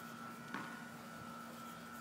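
Faint steady background hum with a thin, steady higher whine over it, and a single soft tick about half a second in.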